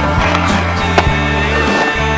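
Skateboard riding on a concrete skatepark bowl: wheels rolling and scraping, with one sharp clack about a second in, over rock music.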